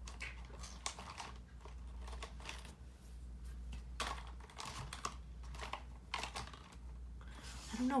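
Felt-tip markers being handled, their plastic barrels and caps giving a run of light, irregular clicks and taps, under a steady low electrical hum.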